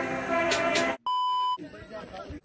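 Background music with a beat stops abruptly about a second in, followed by a single steady electronic beep about half a second long, like an editor's censor bleep, then fainter outdoor sound.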